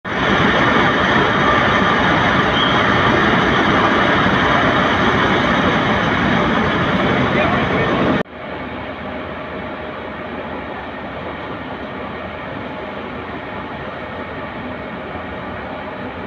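Loud, steady rushing noise that cuts off abruptly about eight seconds in and gives way to a quieter, duller rushing noise.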